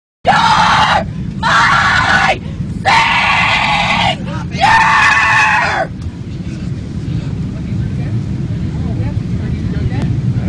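A woman screaming four long shouted cries in quick succession, each about a second long, in a distressed outburst. After them the steady low drone of an airliner cabin continues with faint voices.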